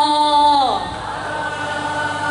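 A woman's voice chanting a Quranic verse in a sung melody into a microphone, holding one long note with a slight waver. About three-quarters of a second in, the note glides down and falls away, leaving a quieter held tone.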